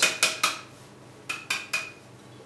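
Copper still column clinking as it is handled: three quick light knocks at the start, then three short ringing metal clinks in the second half.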